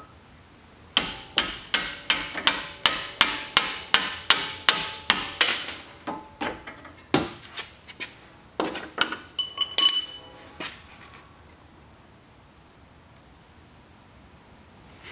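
Hammer blows on the strut-to-knuckle bolts of a Subaru WRX/STI's front suspension, tapping them out: a fast, even run of sharp metallic strikes, about three a second, for five or six seconds. Then a few slower, scattered hits follow, one of them ringing briefly.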